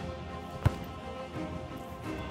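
A football kicked once: a single sharp thud about two-thirds of a second in, over background music.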